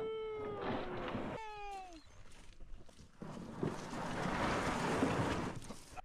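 A long, drawn-out voice cry that rises, holds and sinks slightly, followed by a shorter falling one. Then a few seconds of rough scraping and crunching, with a few knocks, as gear is handled on the gravel shore.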